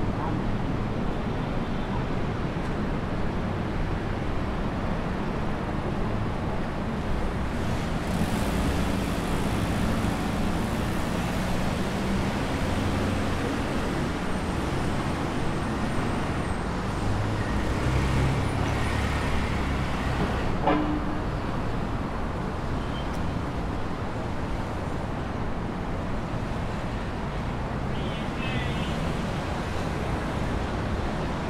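City street traffic: a steady wash of road noise with vehicle engines running and passing. A single sharp click about two-thirds of the way through.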